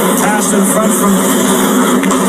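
Ice hockey TV broadcast sound: a steady arena crowd hum with a play-by-play commentator's voice breaking in briefly.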